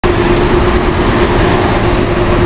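Loud, steady street traffic noise with a constant hum running through it.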